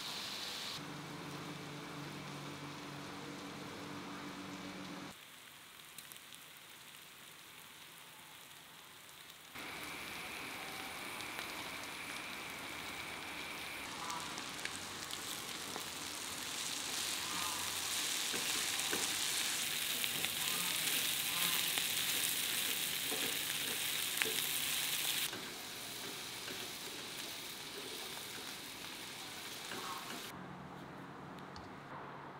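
Food frying in a pan on a gas hob: a steady sizzle with small scrapes and clicks of a spatula stirring it. It builds from about a third of the way in, is loudest in the second half, and drops off sharply near the end, after quieter background sound at the start.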